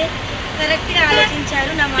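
A woman speaking, over a steady low background rumble.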